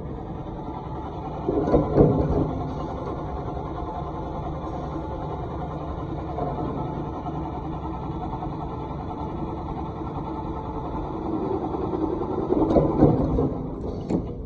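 Cold-forge lead bush machine running through a work cycle: a steady mechanical run with louder, rougher stretches about two seconds in and again near the end.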